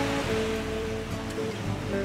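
Surf washing onto a sandy beach, a steady hiss of waves, with background music continuing softly underneath.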